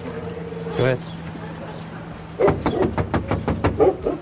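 A rapid series of knuckle knocks on an apartment window, starting a little past halfway through and lasting about a second and a half.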